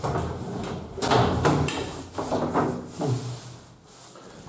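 A fitting being slid open, rubbing and sliding at first, then several sharp knocks and rattles that fade near the end.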